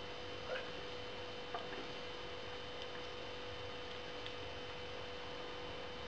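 A man sipping beer from a hydrometer test jar, with two faint soft sounds in the first two seconds, over a steady electrical hum.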